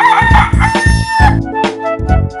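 A rooster crowing one cock-a-doodle-doo in two gliding parts, ending a little past halfway, over music with a steady beat.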